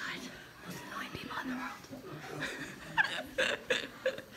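Hushed whispering voices, with a few short, sharp whispered sounds near the end.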